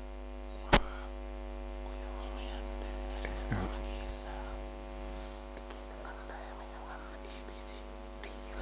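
Steady electrical mains hum through a corded microphone's sound system, with a single sharp click a little under a second in. Faint whispered speech runs under it in the second half.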